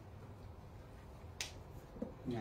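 Quiet room tone with a low hum, broken by one short, sharp click about one and a half seconds in.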